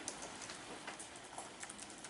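Quiet room tone with scattered faint light clicks and ticks, irregular and close together.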